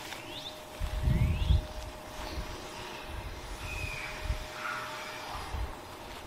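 Outdoor birds calling, with quick rising chirps near the start and a few more short calls later, over a faint steady hum. A brief low rumble about a second in is the loudest sound.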